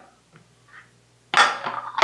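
Crockery being set down and handled on a kitchen counter: a sudden clink about a second in that trails off over the next second, after a couple of faint ticks.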